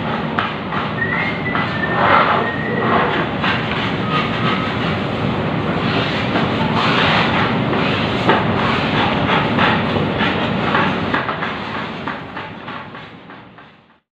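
A steady mechanical rumble with a fine rattling texture, fading out over the last two seconds.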